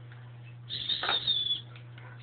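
Lumps of melted-down zinc pennies clinking together as a hand drops them onto a pile on a wooden table, a short jangle lasting about a second in the middle, over a steady low hum.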